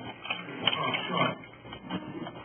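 A five-month-old baby making short vocal sounds while held close, with a sharp click a little past half a second in.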